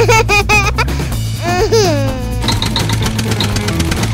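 Background music with a child's laughter sound effect in the first two seconds, the pitch wavering and swooping, followed by light high plinking notes.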